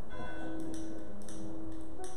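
A struck, bell-like tone rings out right at the start and fades within about a second, with scattered light ticks.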